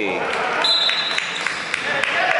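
Dodgeballs bouncing and hitting on the wooden floor of an echoing sports hall during play, with short knocks scattered through. A steady high tone sounds for about a second in the middle.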